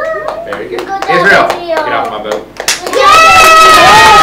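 A class of young children clapping and calling out, then, about three seconds in, chanting together in long held notes.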